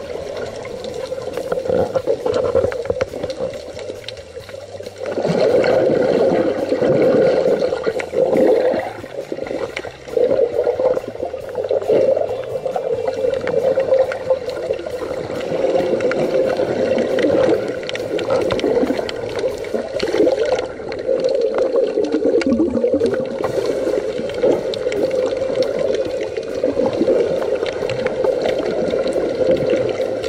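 Muffled underwater rushing and gurgling heard through a submerged camera's housing as swimmers move past. It dips quieter around four seconds in and swells again about a second later.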